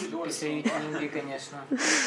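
Talking voices that the recogniser did not write down, with a short breathy laugh near the end.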